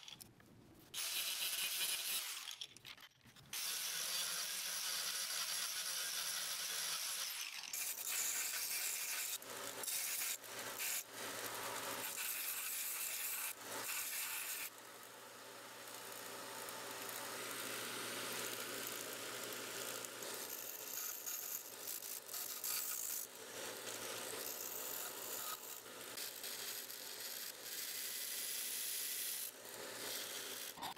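Belt grinder running, with a steady motor hum under the rasping of a steel knife blade pressed against the abrasive belt as its profile and tang are ground. The sound breaks off briefly a few times in the first several seconds.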